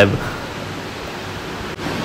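A man's spoken word trailing off, then a pause filled with a steady hiss of background noise, with a momentary break in the hiss near the end.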